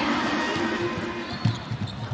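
Basketball dribbled on a hardwood court, a few irregular bounces over steady background noise in the arena, with a louder bounce about one and a half seconds in.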